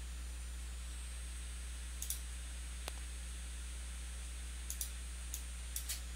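Faint computer mouse clicks, a few scattered through, two of them quick double clicks, over a steady low electrical hum.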